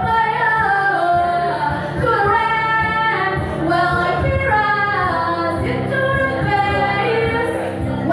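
A woman singing a song into a microphone, amplified, holding long notes that slide between pitches.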